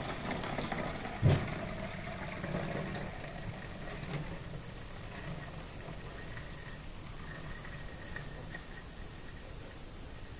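Yeasty water, washed yeast in water, pouring in a steady stream through a plastic funnel into a plastic bottle as the bottle fills. There is a dull knock about a second in.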